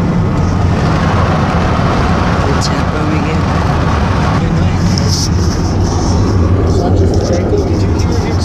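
Steady low drone of a vehicle's engine and road noise heard from inside the cab while driving, with brief rustles of the camera being handled in the second half.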